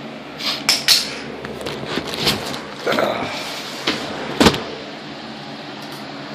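Handling of a cardboard shipping box packed with bubble wrap while it is being opened: a string of short scrapes, rustles and knocks, the loudest a sharp thump about four and a half seconds in.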